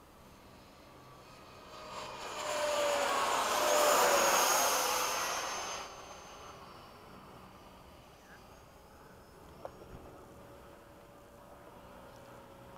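Electric ducted-fan RC jets making a pass: the high fan whine and rush of air build from about two seconds in, peak around four seconds with the pitch dropping as they go by, then fall away quickly near six seconds, leaving a faint distant whine.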